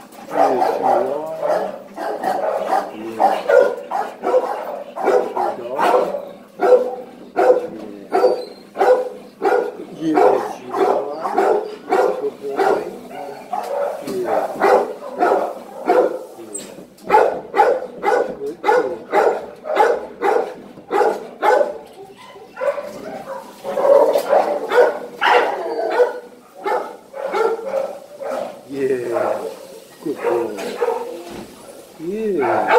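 A dog vocalizing in a long run of short, pitched moaning and grumbling calls, several a second with brief pauses, while being petted.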